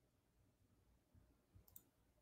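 Near silence, with a single faint click near the end.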